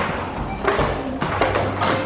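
Roller skate wheels rolling and scraping on a concrete floor, with a few sharp knocks.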